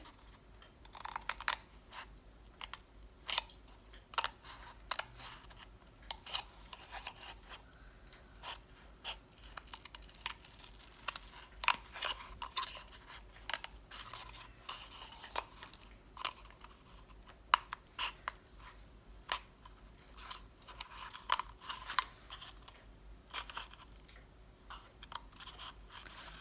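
Scissors cutting into a cardboard toilet paper roll: an irregular run of short snips and crackles of the cardboard.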